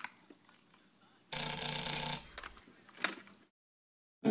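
Handling noise close to a studio microphone as headphones are taken off: a click, then about a second of rustling, then a few sharp clicks, after which the sound cuts off to silence.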